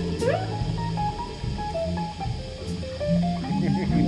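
Live blues band in an instrumental passage: an electric guitar plays a lead line with string bends and slides over bass guitar and drums.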